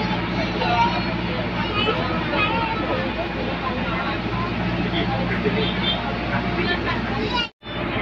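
Inside a moving bus: a steady low engine drone with people chattering in the background. The sound drops out completely for a moment about seven and a half seconds in.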